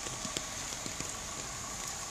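Footsteps on a wet pavement, a scatter of soft taps, over a steady wash of noise from water running through a flooded street.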